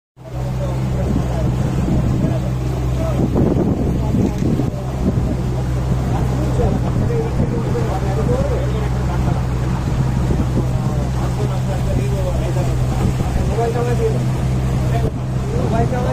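A boat's outboard motor running steadily under way, a constant low drone, with people's voices talking over it.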